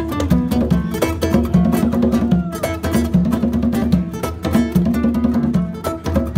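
Live band music: acoustic guitar and percussion playing a repeating low riff over a steady beat, with no vocal line.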